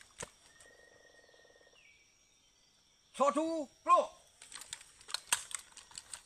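Two short shouted drill commands, followed by a quick run of sharp clicks and clacks from soldiers' rifles being handled during rifle drill.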